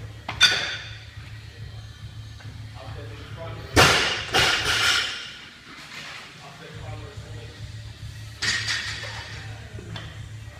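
Clanks and clatters of barbells and bumper plates in a weightlifting gym over a low steady hum. There is a sharp knock about half a second in, a louder cluster of clatters around four seconds in, and another burst of clatter near the end.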